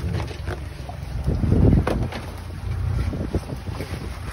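Wind buffeting the microphone with a low rumble, strongest about a second and a half in, over scattered light clicks and scrapes of blue crabs' shells and a plastic basket against a wooden crab box.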